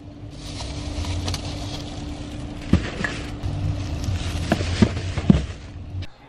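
Plastic grocery bags rustling as groceries are loaded from a shopping cart into a car, with a few sharp knocks near the end of the loading, over a steady low rumble.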